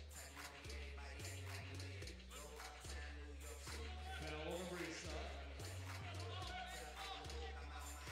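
Faint music from the arena sound system, its bass line changing note about once a second, with distant voices.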